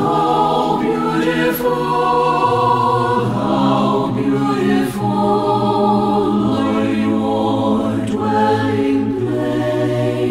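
Mixed a cappella choir singing slow, sustained chords in close harmony, all voices entering together at the start. The bass steps down about two and a half seconds in, with further slow chord changes after.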